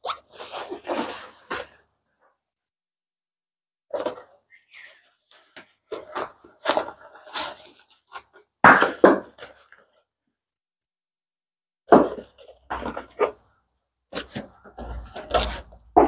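A fabric backpack being handled and turned over: short rustles and scrapes of the material in scattered bursts, with pauses between.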